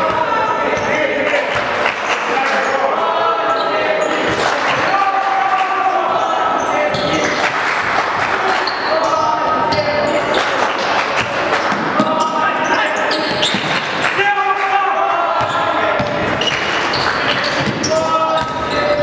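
Basketball bouncing on a sports-hall court during play, with voices of players and spectators calling out across the hall.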